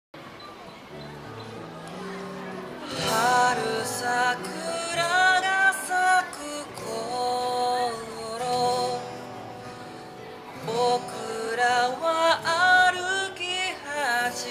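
A man singing with his own acoustic guitar accompaniment, through a microphone; the guitar plays alone for about the first three seconds before the voice comes in.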